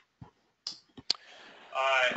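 A few short, soft clicks spread over the first second or so, then a faint hiss and a man's voice beginning a hesitant 'uh' near the end.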